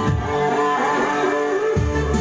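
Live band music: the drums and bass drop out for about a second and a half while an electric guitar plays a melodic fill with bending notes, then the full band comes back in near the end.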